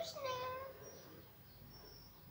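A short, high-pitched vocal sound with a gliding pitch, like a meow. It dies away within the first second, leaving faint room tone.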